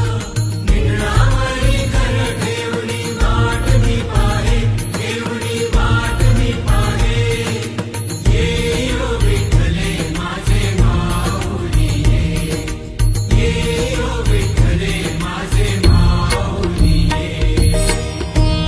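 Marathi devotional song to Vitthal: a voice singing in chant-like phrases over drums and instruments.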